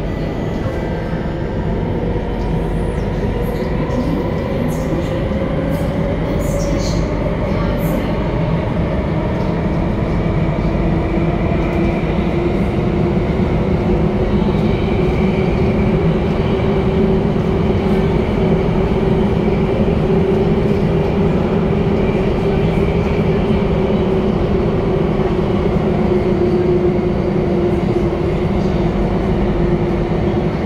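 Alstom Metropolis C830C metro train running through a tunnel, heard from inside the car: a steady wheel and track rumble with a traction-motor whine that climbs a little over the first dozen seconds, then holds.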